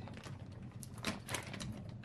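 Crinkling and rustling of a large woven plastic tote bag being unfolded and handled, in a few short crackly bursts.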